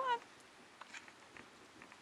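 A woman's voice finishing the word "on" with a rising, coaxing pitch at the very start, then quiet outdoor ambience with a few faint ticks.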